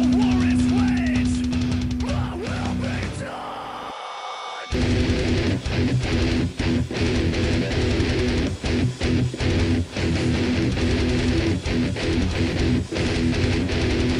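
Heavy metal played on a distorted electric guitar. A long held note with gliding lead lines fades out over the first few seconds, and the music breaks off briefly about four seconds in. Then fast, choppy riffing comes in, with short stops.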